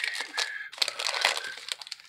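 Wrapper of a Panini Prizm basketball trading-card pack crinkling and tearing as it is pulled open by hand. The irregular crackling eases off near the end.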